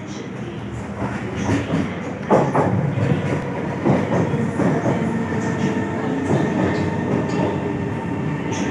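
SMRT C151 first-generation Kawasaki metro train pulling into the station platform. It grows louder over the first two or three seconds into a steady rumble with repeated clicks of the wheels over rail joints, and a steady whine joins about halfway through.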